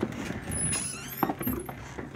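A door being opened and someone stepping outside: rustling, with a sharp click at the start and a couple of knocks just over a second in.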